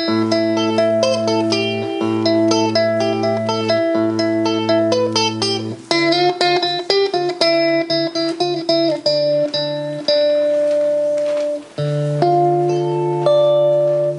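Solo electric guitar played live, instrumental: a low bass note holds under picked melody notes, and the harmony changes about six seconds in and again around twelve.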